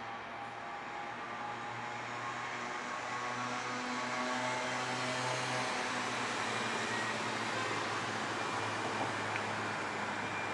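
Fokker 70 airliner's rear-mounted Rolls-Royce Tay turbofans on final approach: a steady jet rush with a hum and a few held whining tones, growing louder over the first few seconds as the aircraft comes closer, then holding.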